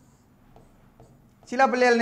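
A short, quiet pause with two faint clicks, then a man's voice starts speaking about one and a half seconds in.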